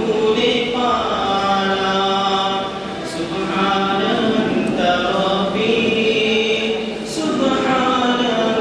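A young man singing a hamd, a poem in praise of God, solo and unaccompanied, in long melodic phrases of held, gliding notes with short breaks between them.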